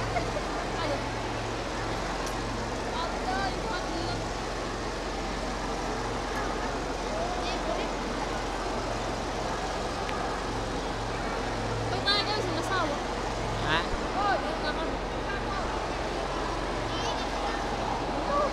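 Crowd chatter in a large hall: many voices talking at once, none standing out, with a low hum that comes and goes underneath. A few nearer voices rise above the murmur near the end.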